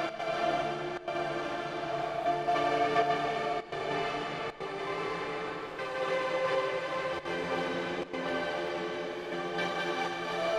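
Dreamy, sustained synth pad chords in the playback of a music session, processed through the Portal granular effect plugin. The sound briefly drops out several times, about a second in and again near four and a half, seven and eight seconds.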